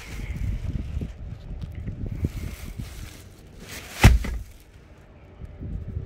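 Third-row seat of a Toyota Fortuner being folded by hand: rustling of its plastic seat cover and small clicks of the seat mechanism, then one loud clunk about four seconds in as the seatback folds down.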